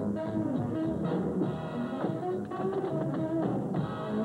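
Big-band swing music playing, with the quick, crisp taps of two dancers' tap shoes sounding throughout. It is heard through an old film soundtrack dubbed from VHS.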